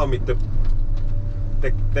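Ponsse Scorpion King forest harvester's diesel engine running steadily, a low hum heard from inside the cab, with a faint steady higher tone above it.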